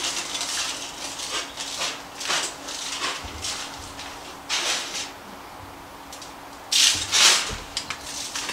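Hands rubbing spice rub into a slab of pork ribs on heavy-duty aluminium foil, with the foil crinkling in a run of short swishes that are loudest near the end.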